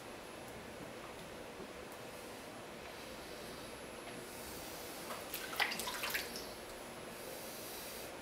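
Wet clay squelching under a potter's hands on a spinning wheel as the rim is pressed down and compressed: a faint steady hiss, then a short run of wet squishes and clicks about five to six seconds in.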